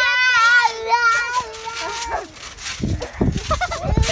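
A child's long wordless vocal sound, held for about two seconds with a wobbling, shaky pitch. Low thumps follow near the end, from bouncing on the trampoline with the phone.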